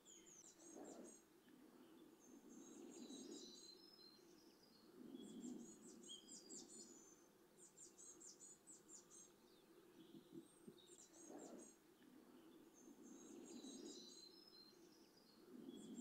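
Near silence with faint birdsong: short, high chirping phrases that repeat every few seconds.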